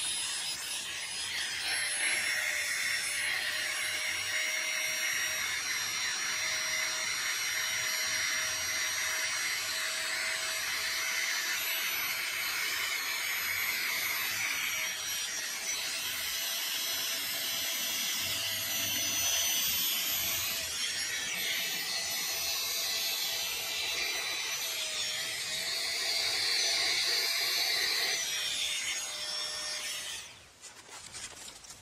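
Small electric air pump running steadily, blowing up an inflatable sleeping pad; it shuts off right at the end.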